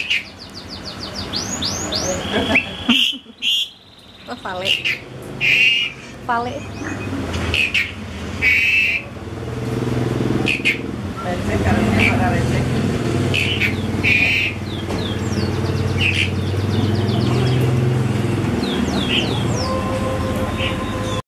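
Small birds chirping over and over, with voices in the background. About halfway through, a car engine starts a steady low idle hum that carries on almost to the end.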